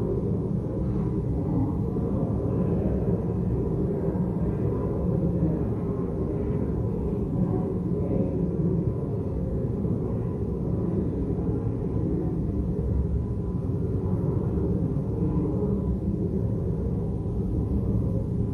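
Low, steady murmur of many people talking quietly and moving about in a large chamber, with no single voice standing out.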